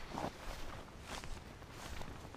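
Footsteps of a person walking through dry, matted grass, a soft crunch with each step and a louder one just after the start.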